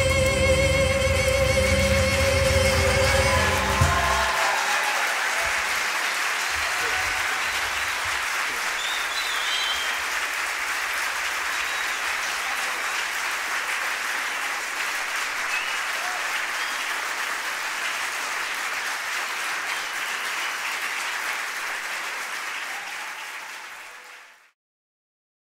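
The last held chord of singing and instruments stops about four seconds in, and the audience applauds steadily in the hall. The applause fades out near the end.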